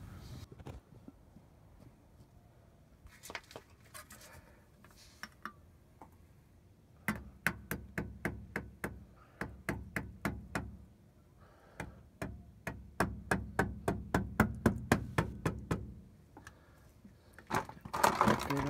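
A mallet taps repeatedly on the handle of a scraper wedged under the edge of a rear differential cover, prying the cover loose. The taps come in two runs of about three or four a second, starting about seven seconds in, with a short pause partway through.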